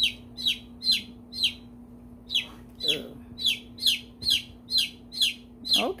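A young chicken chick peeping loudly, a run of short, high calls that each slide downward, about two a second, with a brief pause about a second and a half in. A steady low hum runs underneath.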